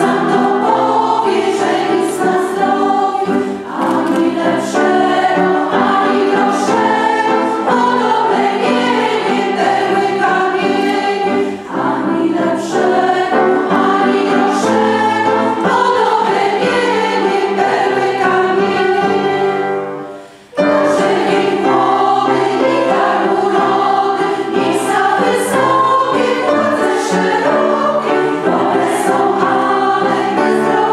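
Women's vocal ensemble singing a song together, the voices carrying on continuously apart from a short break about two-thirds of the way through, after which the singing comes straight back in.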